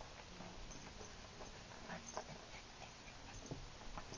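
A small dog rolling and rooting about on carpet with a paper tissue: faint, scattered rustles, scuffs and snuffles.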